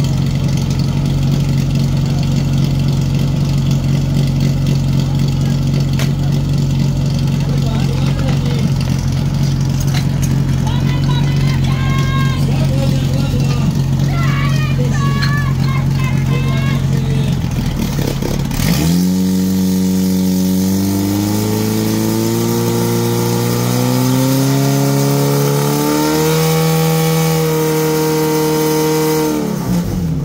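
Portable fire pump's engine running loud and steady while voices shout over it. About two-thirds of the way in it revs up, its pitch climbing in steps as it drives water out to the hose lines, then drops off sharply at the end.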